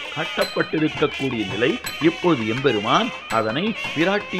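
A voice singing or chanting in long melodic phrases whose pitch glides up and down, over faint steady high ringing tones.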